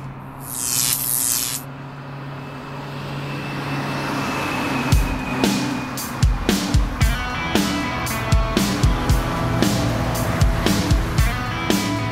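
A hard rock song starting up: a short hiss and a low held drone open it, then drums and guitar come in about five seconds in with a slow, steady beat.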